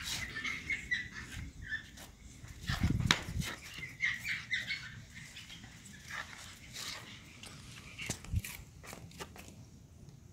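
Pug puppies giving short high whimpers and yips in small clusters, with scattered sharp clicks and a louder thump about three seconds in.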